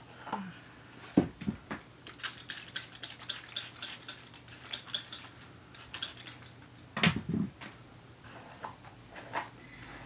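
Hand-pump plastic spray bottle misting water onto hair: a quick run of short squirts, about three a second, for several seconds in the middle. Two louder dull thumps from handling, about a second in and again near seven seconds.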